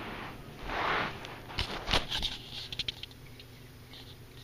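A rustle, then a run of light clicks and knocks, the loudest about two seconds in: snacks being handled and set onto a mini fridge's wire shelf.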